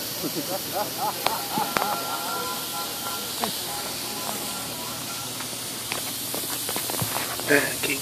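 Steady hiss of steam from a coal-fired gauge 1 live-steam locomotive standing in steam, with a few light clicks.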